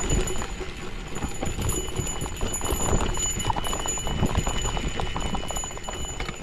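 Cervélo Áspero 5 gravel bike on Panaracer GravelKing 40 mm tyres riding over a rough forest dirt trail: the tyres rolling on dirt and the bike rattling in a dense, irregular clatter of small knocks.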